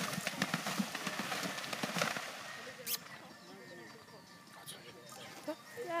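A galloping horse's hooves splashing through a cross-country water jump: a rush of splashing and rapid hoof strikes that is loudest about two seconds in, then fades away.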